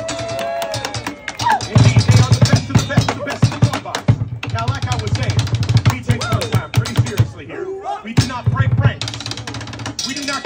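Drumsticks beating a fast rhythm on prop drums, a giant modeling-compound can and striped barrels, with brief breaks about four and eight seconds in. Crowd voices are heard over the drumming.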